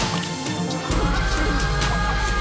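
Live electronic dance music played on synthesizers and controllers. It opens on a sudden noisy hit with the bass cut out, and about a second in a deep bass comes back in under a high held tone.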